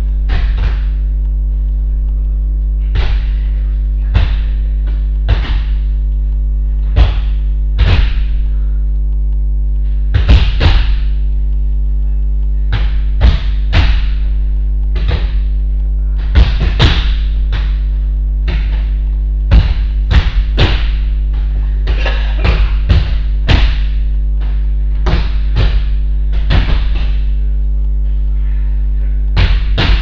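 Loud, steady electrical mains hum, with irregular soft thuds and rustles every second or two from bodies rolling and landing on judo mats.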